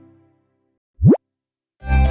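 Music fading out, then one short cartoon sound effect about a second in: a quick upward glide in pitch, like a bloop. New music starts near the end.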